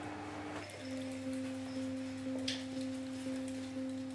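Background score of held electronic tones: a low sustained note that steps down in pitch under a second in, then swells gently about twice a second.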